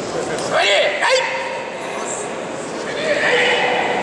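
Short shouted voice calls echoing in a large sports hall over a steady background of crowd chatter: a loud rising-and-falling shout about half a second in, a second sharp call just after the one-second mark, and a longer held call from about three seconds in.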